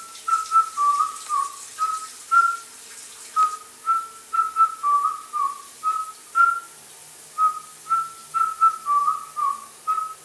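A whistled tune of short, bright notes, the same little phrase repeating about every four seconds.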